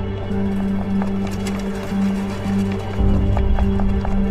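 Tense drama underscore: a low sustained note that pulses on and off over a bass layer, with scattered light percussive clicks.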